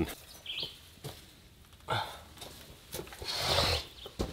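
Quiet outdoor background with a single short bird chirp about half a second in, a few faint knocks, and a short rustle near the end that is the loudest sound.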